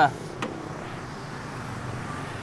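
Steady low rumble of street traffic, with one short click about half a second in.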